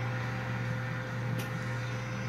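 Steady low mechanical hum of room equipment such as a ventilation fan, with a faint steady tone over it and one brief click late on.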